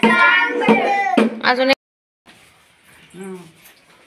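Children singing a bhajan together, with a few sharp percussive strikes; the singing cuts off abruptly a little before halfway, leaving quiet room sound and a brief voice.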